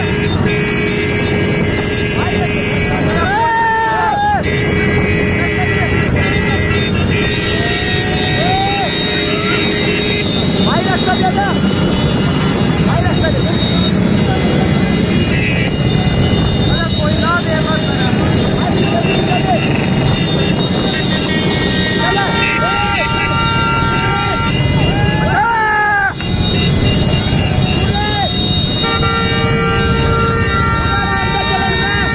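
Engines of vehicles running in a loud, steady din, with horns honking repeatedly (held blasts, a burst of them about two-thirds of the way through and again near the end) and people shouting over them.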